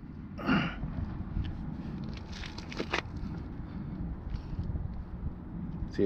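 Microfiber towel rubbing and wiping over a gloss-black alloy car wheel, faint and irregular, with a short louder rustle about half a second in, over a low steady rumble.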